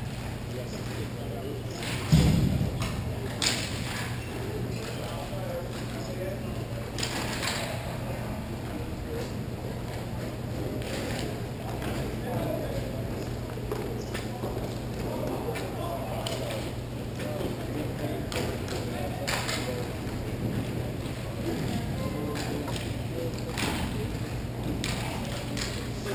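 Ice hockey game ambience: scattered sharp clicks and scrapes from sticks, skates and puck, with distant voices over a steady low hum. There is a loud thump about two seconds in.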